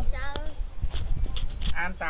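Young children's voices chanting lesson syllables in a classroom, which stop for a pause of about a second with a few low knocks, then start again near the end.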